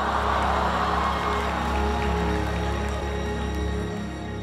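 Dramatic background music on steady low held notes, with a swell of audience noise, a rush of gasps and cheering, that rises at the start and fades away over the next few seconds.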